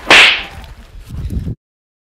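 A short, loud whip-crack swoosh sound effect right at the start, followed by fainter low sounds. The sound cuts off suddenly about a second and a half in.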